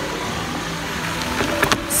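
Steady background noise with faint tones under it, and a few faint clicks near the end.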